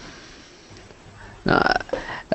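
Speech only: a short spoken "no" about a second and a half in, after low line hiss on a video-call link.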